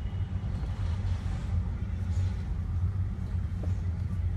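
Steady low rumble of a car driving in slow city traffic, its engine and tyres heard from inside the cabin.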